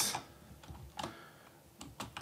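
Typing on a computer keyboard: a few separate, light keystroke clicks.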